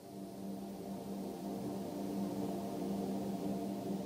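Ambient music: a low, sustained drone of layered held tones that fades in over the first second or so, then holds steady.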